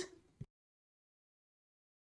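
Near silence: the last of a spoken word fades out in the first half-second, a single faint click follows, then the sound track drops to dead digital silence.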